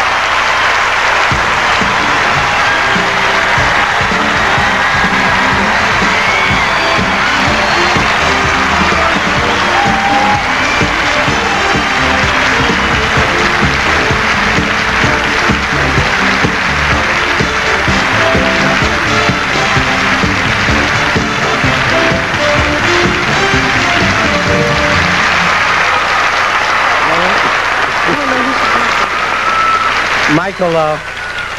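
Large audience applauding over a band playing the winners on; the music drops out near the end, leaving the applause.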